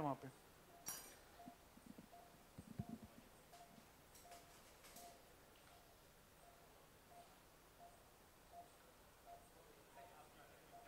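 Near silence, with a faint short beep repeating evenly about twice a second, typical of an operating-room patient monitor, and a few faint clicks.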